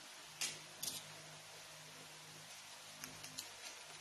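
Two brief rustles of stiffened fabric flower petals being handled, about half a second and a second in, then a few faint ticks, over a low steady room hum.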